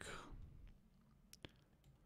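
Near silence with two faint computer mouse clicks close together about a second and a half in.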